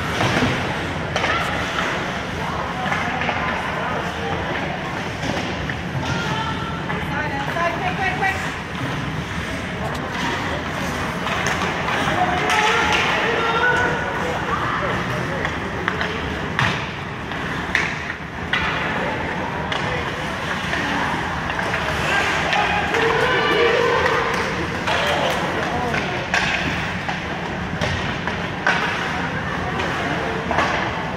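Ice hockey rink ambience: voices of spectators and players talking and calling out across the echoing rink, with scattered sharp clacks of sticks and puck.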